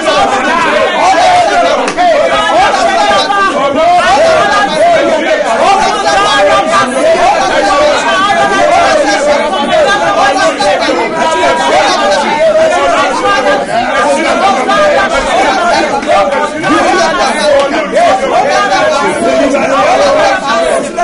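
A man and a woman praying aloud at the same time, loud and unbroken, their voices overlapping.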